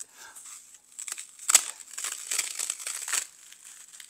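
Silicone rubber mold being peeled off raw, unsealed foam: irregular crackling and tearing, loudest about one and a half seconds in, as the rubber rips the foam surface away with it. With no sealer, the rubber has bonded to the foam.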